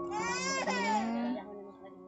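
A high, wailing voice that rises and falls in one long cry over about a second and a half, then fades, over steady background music.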